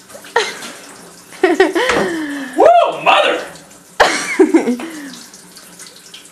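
Kitchen tap running into the sink as a man bends over it to rinse out his mouth burning from ground red pepper, with loud wordless cries and laughter rising and falling over the water, twice swelling up.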